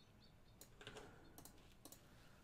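Near silence with about five faint, short computer clicks scattered through two seconds.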